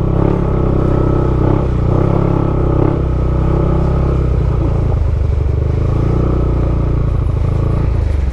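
Motorcycle engine running steadily while riding over a rough gravel trail, its note dipping briefly a couple of times in the first three seconds.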